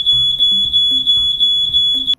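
Smoke alarm sounding: one loud, steady, high-pitched tone that holds without a break.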